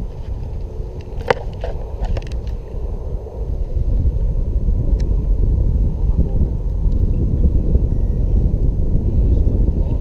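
Wind buffeting the camera's microphone: a loud, steady low rumble that grows louder about four seconds in, with a few sharp clicks in the first couple of seconds.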